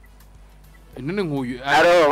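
Drawn-out, bleat-like calls, each rising and falling in pitch, starting about a second in and growing louder near the end.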